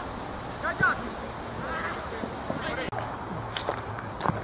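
Short shouted calls from players carrying across an outdoor football pitch, one about a second in and more around two seconds, then a couple of sharp knocks of a football being kicked near the end.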